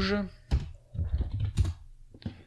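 Typing on a computer keyboard: a single keystroke about half a second in, then a quick run of keystrokes around a second in. The tail of a spoken word is heard at the very start.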